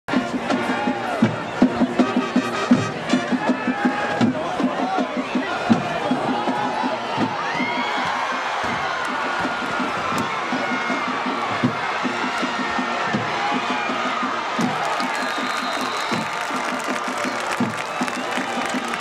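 Football crowd in the stands cheering and shouting through a play, with rapid rhythmic beating in the first several seconds.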